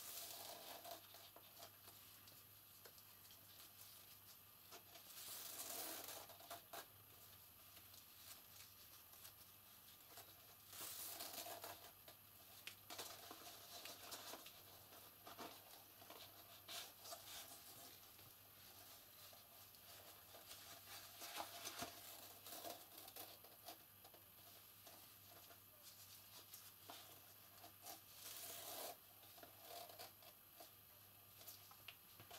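Faint rustling of ribbon and a card box being handled as knots are tied in the ribbon, coming in short bursts with a few small clicks, over a low steady hum.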